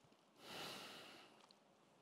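A single soft breath out, heard close on the lectern microphone, about half a second in and fading within a second; otherwise near silence.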